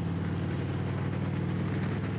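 Harley-Davidson Fat Bob 114's V-twin engine through Rinehart slip-on exhausts, running steadily at cruising speed, with wind and road noise on the helmet-mounted microphone.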